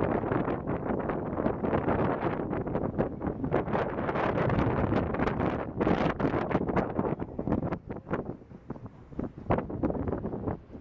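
Wind buffeting the microphone in gusts on the open deck of a paddle steamer under way. It eases for a couple of seconds near the end.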